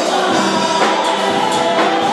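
Gospel choir and praise team singing with live band accompaniment, drum hits marking the beat.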